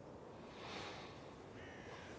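Quiet outdoor background with a soft hiss swelling about half a second in, and a short, faint bird call near the end.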